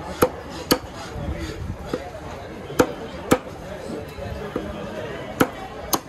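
Large chopping knife striking through bighead carp pieces into a wooden log chopping block: sharp chops, mostly in pairs about half a second apart, with a few lighter strokes between.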